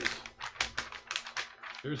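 Sheets of animation drawing paper being flipped by hand on their pegs: a quick run of crisp paper flaps and rustles, several a second.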